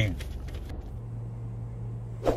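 Faint background noise inside a parked car's cabin. It cuts off abruptly under a second in, and a steady low hum follows.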